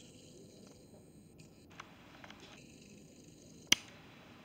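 Quiet background with a few faint ticks, then one sharp click near the end.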